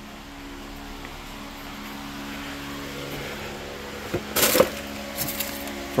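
A steady electric hum throughout, then a sharp clatter about four seconds in and a few smaller knocks just after, as a refrigerator's freezer door is pulled open and things inside are moved about.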